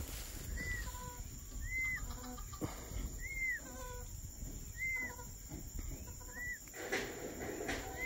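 A turkey poult separated from its hen, peeping: six high, short, arched whistled calls about every one and a half seconds, the cry of a chick left behind.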